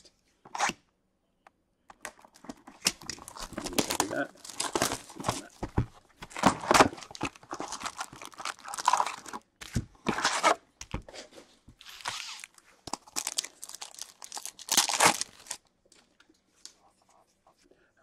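Cardboard of a 2019-20 Upper Deck Series One hockey card retail box being torn open by hand, then its foil packs handled and a pack ripped open. It is a long run of irregular tearing and crinkling noises, starting about two seconds in and stopping shortly before the end.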